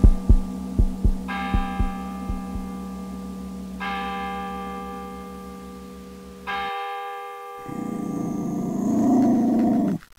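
Dramatic soundtrack effects. Low heartbeat-like thumps in pairs fade away over a steady hum, then a bell-like tone tolls three times, about two and a half seconds apart. A rising drone swells near the end and cuts off suddenly.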